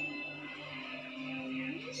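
Music from a television soundtrack, with one note held steadily and then rising near the end.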